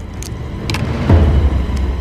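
Film soundtrack: a deep low rumble that swells to its loudest about a second in, with a few sharp clicks and a short falling sweep over it.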